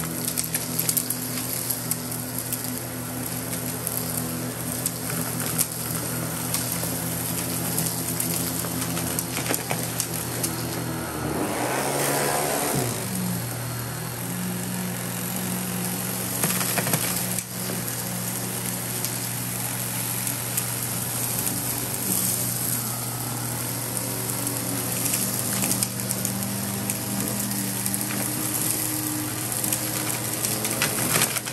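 Miele vacuum cleaner with a powered brush head running steadily over a shag rug, sucking up hair, paper scraps and grit with scattered small clicks and rattles. About eleven seconds in, the motor's pitch swings for a second or two, then it settles back to its steady hum.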